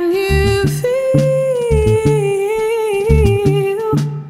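Soul song: a woman's voice holds one long note that steps up in pitch about a second in and then slowly sinks, over a bass line of short low notes.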